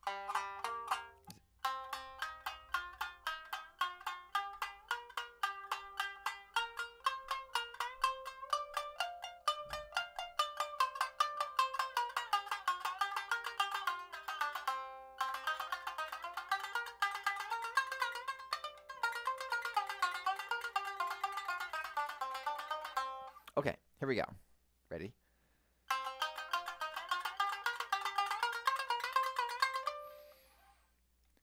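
Tsugaru shamisen played with the bachi in a rapid up-down stroke drill: a fast, even stream of twangy plucked notes running through a repeating melodic pattern. It pauses briefly about halfway through, and breaks off for about two seconds near the end before starting again.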